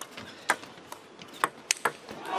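Table tennis ball clicking sharply off the players' rubber-faced bats and the table in a fast rally, about six hits, coming quicker toward the end.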